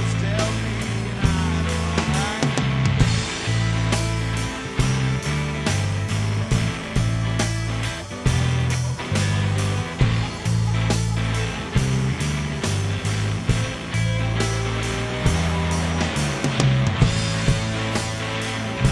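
Live rock band playing an instrumental passage with no singing: a steady drum beat over a bass line and guitars.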